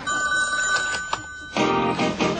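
A telephone rings with a steady electronic two-tone ring for about a second and a half. Then an answering machine picks up and begins playing its outgoing greeting, a recorded musical intro.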